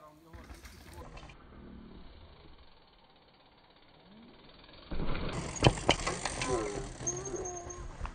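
Mountain bike ridden along a dirt jump line: faint rolling noise of tyres on dirt. About five seconds in comes a much louder stretch with a few sharp knocks, followed by people's voices.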